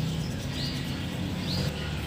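A small bird chirping twice in the background, short high chirps a little under a second apart, over a steady low hum.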